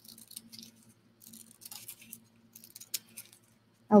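Small scissors snipping pieces of Velcro tape: a few faint, crisp cuts and rustles, with one sharper snip about three seconds in.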